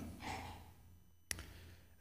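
A man's breath into a close microphone during a pause in his speech, fading out within the first second. A single short, sharp click follows at about 1.3 s.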